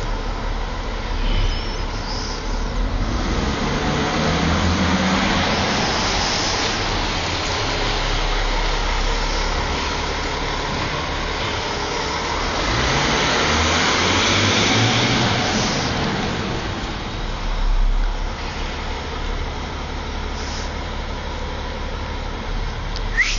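A car driving, its engine and road noise swelling twice and easing off between, the low engine note climbing as it accelerates.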